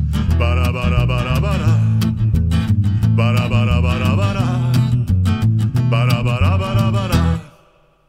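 Band music with guitar, bass and drums under a wavering lead melody. It stops suddenly near the end, leaving a moment of near silence.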